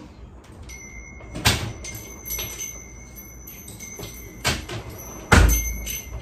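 A few sharp knocks and thuds, the loudest with a heavy low thump near the end, over a steady high-pitched whine.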